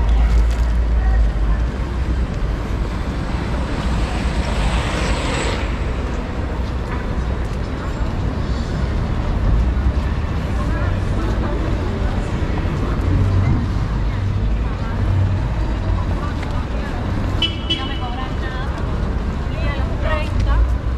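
City street traffic noise heard while walking beside a road, with a steady low rumble and a vehicle passing about four to six seconds in.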